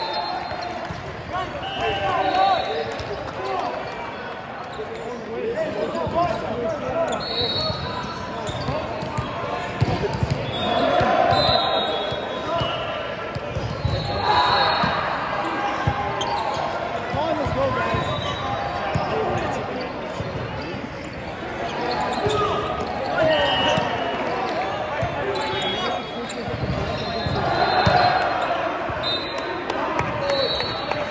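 Indoor volleyball play in a large echoing gym: players and spectators calling out and chattering, the ball being struck, and short high squeaks of sneakers on the court floor recurring throughout.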